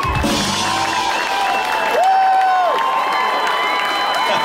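A live band's closing chord ringing out, with a drum hit at the very start, while the crowd cheers and whistles.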